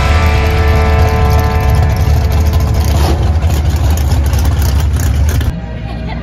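A drag-race car's engine running with a loud, steady low rumble as the car rolls slowly. The sound stops abruptly about five and a half seconds in, giving way to quieter background noise.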